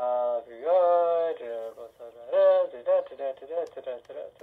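A person's voice making long, drawn-out vocal sounds on held pitches, then quicker indistinct syllables near the end, with no clear words.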